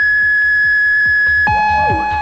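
Electronic dance music (techno) from a club DJ session: a high synth note is held over a steady, evenly repeating kick-drum beat. About one and a half seconds in, a new, lower synth note comes in with a bright layer above it.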